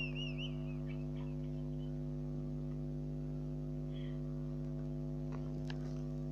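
Steady electrical hum made of several even, unchanging tones. A high, wavering voice trails off in the first half second.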